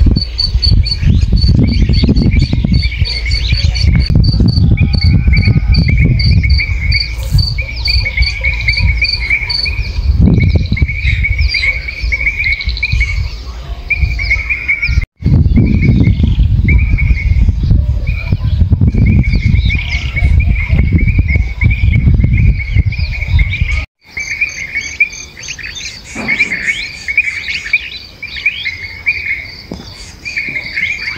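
Insects chirping in steady, fast-pulsed trills, with a few bird calls above them, over a loud low rumble. Everything cuts out abruptly for an instant twice, about halfway through and again a little after.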